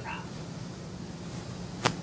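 Steady low hum, with a single sharp click near the end.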